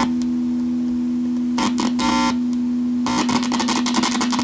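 Amplified 1976 Rickenbacker 425 electric guitar giving a loud steady electrical hum, with scratchy crackles and pops as its control knob is worked, a short burst about halfway and a dense run near the end.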